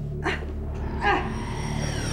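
Two short strained cries of a person straining at crunches, the second one louder, over a low droning music bed.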